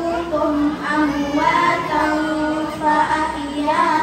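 A schoolgirl singing into a microphone, a young female voice holding long notes that bend and waver in pitch, amplified through the hall's sound system.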